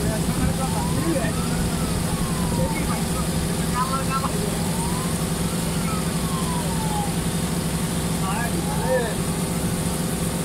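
A water bus's engine running steadily, heard from inside the passenger cabin, with a low, even drone. Passengers' voices murmur over it, and a fainter tone slides up and then down every few seconds.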